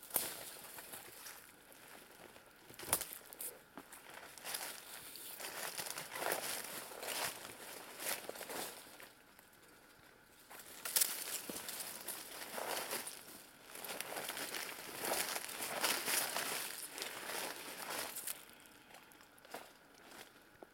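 Footsteps crunching and rustling through dry leaves, twigs and brush on a forest floor, in irregular bursts with a couple of short pauses.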